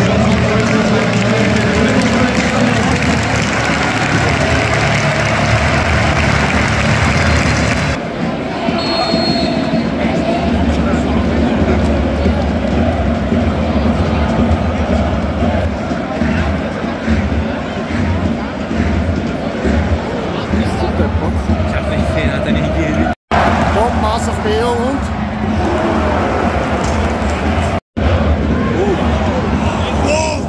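Loud, continuous noise of a large football stadium crowd, many voices at once, heard through a phone microphone. The sound changes abruptly about 8 seconds in and breaks off for an instant twice near the end.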